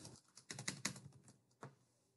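Faint computer keyboard keystrokes: a quick run of taps over the first second and a half, then one more tap shortly after.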